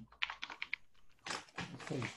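Computer keyboard typing: a quick run of about ten keystrokes in the first second, then more typing after a short pause.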